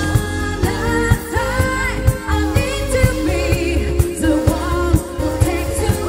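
A woman singing live into a microphone with a pop band, her voice wavering with vibrato over a steady drum beat, heard through the concert sound system.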